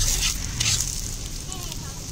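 Chicken pitha batter frying in an iron pan over a wood fire, sizzling steadily, with two brief louder swells of sizzle in the first second.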